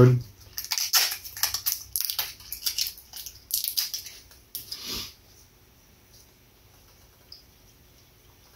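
A small hot sauce bottle being opened by hand: irregular crinkling and crackling of its plastic seal and cap, ending about five seconds in.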